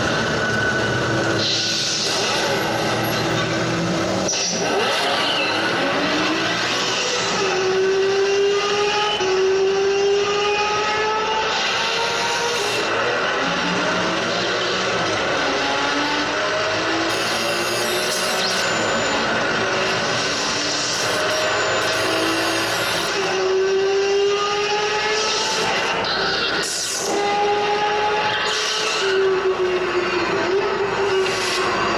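Sports-car engine accelerating hard on a film soundtrack played over a hall's loudspeakers, its pitch climbing and dropping back again several times as it shifts up through the gears, with tyre noise underneath.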